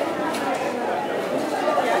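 Supermarket ambience: many shoppers' voices chattering at once, steady throughout, with one light click about a third of a second in.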